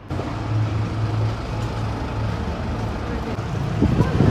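Street traffic noise with a steady low engine hum from a nearby vehicle.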